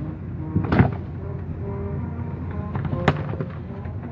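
Automatic car wash heard from inside the car: a steady rumble of water spray and brushes on the bodywork, with two sharp slaps, one about a second in and a louder one near three seconds.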